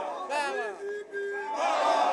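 A crowd of men shouting together, several voices raised at once, with one voice holding a long note midway and a louder burst of shouting near the end.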